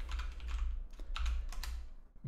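Typing on a computer keyboard: a quick run of separate keystrokes spread through the two seconds.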